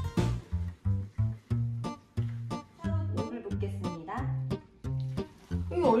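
Background music: a bouncy plucked-string tune over a steady, evenly repeating bass beat.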